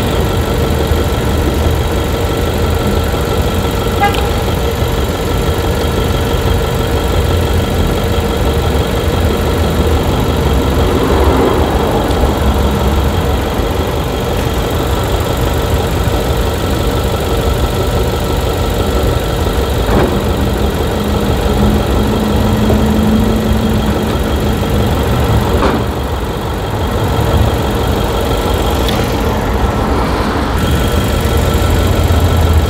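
Car engine idling steadily, a continuous low rumble heard up close at the front of a 2019 Honda Accord.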